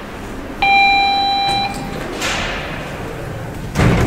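Elevator arrival signal: a single steady electronic tone sounds about half a second in and holds for about a second. The landing doors then slide open, with a thud near the end.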